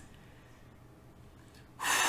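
A quiet pause, then near the end a sharp, noisy breath into the microphone, a gasp-like intake before speaking.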